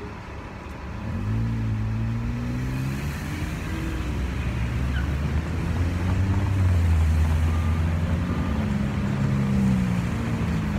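Car traffic passing on the street, with engine hum starting about a second in and growing louder toward the end as vehicles go by.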